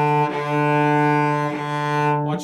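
Cello bowed on one sustained low note, with smooth bow changes about a third of a second in and again about a second and a half in. The up and down bows are driven by a loose pendulum swing of the elbow.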